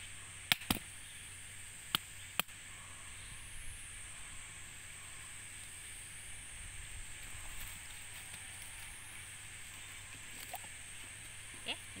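Back of a machete blade knocking on the hard shell of a mature husked coconut, striking around its middle to split it open: four sharp knocks in the first two and a half seconds, then a steady high hiss.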